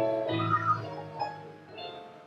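Slow, soft keyboard music with held chords, and a drawn-out wailing, moan-like voice over a microphone that starts suddenly and bends in pitch through the first second before fading.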